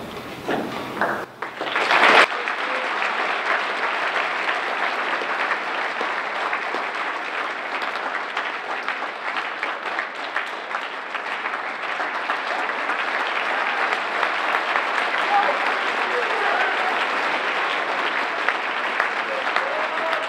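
Audience applauding: dense, steady clapping that starts about two seconds in and keeps going.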